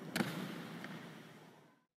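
A single short knock about a fifth of a second in, followed by faint room noise that fades out.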